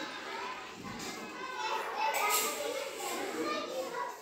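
Several children's voices talking and calling out at once in the background, with no one voice in front.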